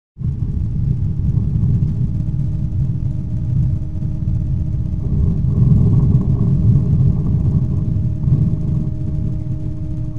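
A trail camera's own audio track: a loud, steady low rumble with a faint steady hum on top, starting abruptly.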